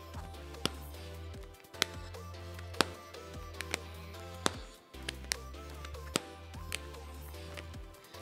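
The thick plastic case on a Google Pixel Fold cracks with sharp, irregular clicks, about eight of them, as the phone is folded open and shut over and over. This creaking when the phone opens is a flaw of the bulky bundled case. Background music plays underneath.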